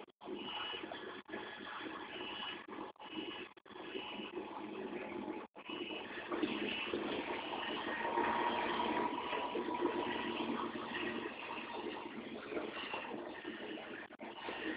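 Steady noise of vehicle engines running at an emergency scene, broken by a few brief dropouts in the first half and growing louder about six seconds in.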